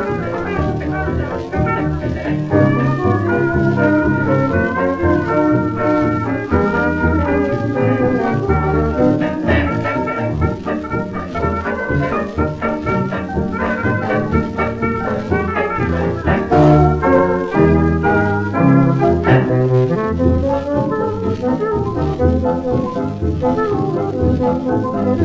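A 1920s hot jazz dance band playing a foxtrot, heard from a 78 rpm shellac record: brass over a steady dance rhythm, playing without a break.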